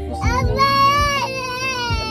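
A baby's long, high-pitched vocal squeal, held for about a second and a half with a slightly wavering pitch.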